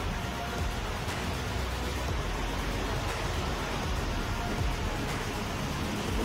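Steady rushing noise of surf breaking on a beach, with soft background music underneath.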